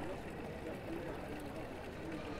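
Ambience of a busy town square: indistinct distant voices and chatter from people around café terraces over a steady low hum.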